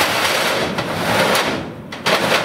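Metal roll-up door on a cattle trailer being worked by hand, a continuous rattling clatter of its slats that eases off near the end.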